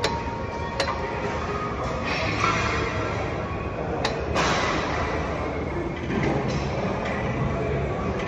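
Busy gym noise: a steady din with music playing, broken by a few sharp metallic clinks from the weight machines, one about a second in and two close together around four seconds in.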